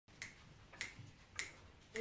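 Finger snaps keeping the tempo for the song: three sharp snaps evenly spaced, about 0.6 s apart, just before the vocal comes in.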